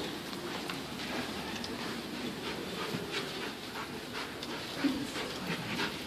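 A detection dog panting steadily as it searches, with scattered light clicks.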